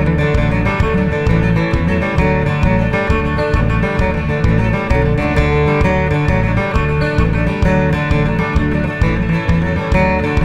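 Cutaway acoustic-electric guitar playing a lively Newfoundland jig, with a steady, evenly paced bass under a busy picked melody.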